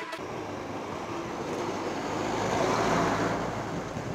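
Motorcycle on the move: rushing wind and road noise over the rider's camera microphone with a low engine hum underneath, the rush swelling and easing off around the third second.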